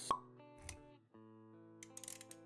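Intro-animation sound effects over soft background music: a sharp pop just after the start, the loudest thing here, then a softer hit with a low rumble under it. After a brief drop, sustained music notes come back in.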